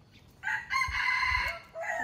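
A rooster crowing: one loud call starting about half a second in and lasting about a second, then a shorter call near the end.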